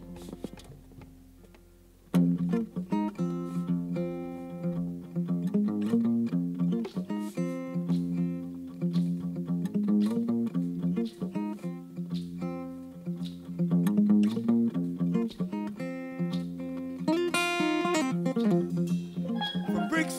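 A live band strikes up: after a quiet first two seconds, a plucked guitar riff over bass guitar starts and keeps a steady, repeating groove. A brighter, higher part comes in briefly near the end.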